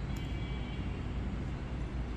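Steady low rumbling background noise, with a faint high whine lasting under a second near the start.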